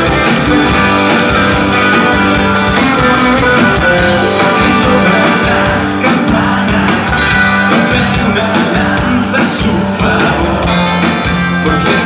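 Live rock band playing loudly: electric guitars over a steady drum beat.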